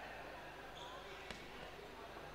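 Faint, indistinct voices of people in a large hall, with one sharp knock about a second and a half in.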